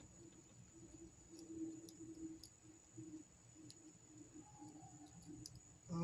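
Near silence with a few faint, scattered clicks of a screwdriver working at a stuck screw in a plastic solar-panel frame. A faint low hum comes and goes.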